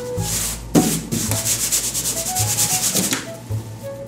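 A hand rubbing a glued sheet of paper flat against a cardboard box in quick back-and-forth strokes for about three seconds, with a sharp tap about a second in.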